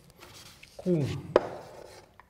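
A piece of chalk strikes a chalkboard once, sharply, about a second and a half in, as writing begins; a man's voice says one short syllable just before it. Faint rubbing at the start, from a cloth wiping the board.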